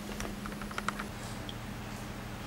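About half a dozen faint, quick clicks in the first second, over a steady low hum in the recording room.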